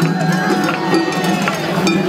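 Festival float music (matsuri-bayashi): a small metal hand gong struck repeatedly with a bright, ringing clang, over a crowd talking.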